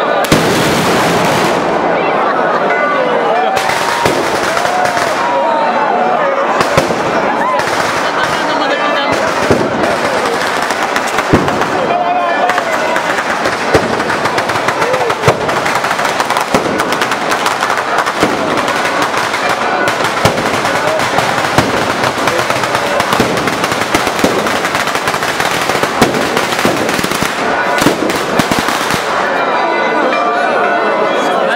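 A batteria of firecracker strings hung over a packed crowd going off in a dense, continuous crackle, with louder single bangs every second or two. People in the crowd shout over it.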